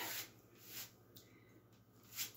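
Near silence: room tone with a faint low hum, broken only by a soft brief sound a little under a second in and a faint tick just after.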